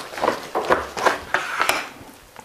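Chef's knife sawing through the seared crust of a stuffed picanha roast on a wooden cutting board: a run of short cutting strokes, about three to four a second.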